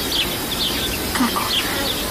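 Countryside ambience: a steady insect buzz with short, high bird chirps repeating about twice a second.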